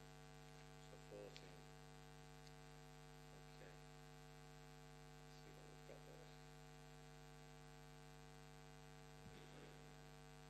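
Near silence apart from a steady electrical mains hum, with a few faint, brief sounds about a second in, near the middle and near the end.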